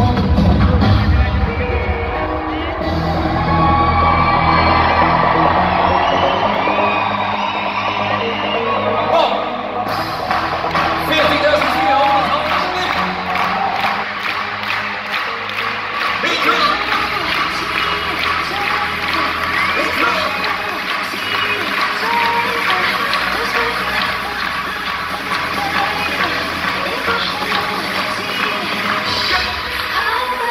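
Live dance-pop song over an arena PA, heard from among the audience: the heavy beat drops out about two seconds in, leaving a female lead vocal over lighter backing, with the crowd cheering.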